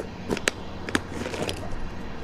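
A few light clicks and knocks of a clear plastic tackle box and gear being handled and set down, over a low steady background rumble.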